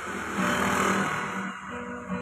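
Acoustic guitar being strummed, its notes ringing steadily, with a rushing noise that swells and fades over the first second and a half.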